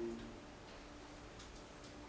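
Quiet room tone with a faint steady hum, and two light clicks about a second and a half in, from a laptop being worked.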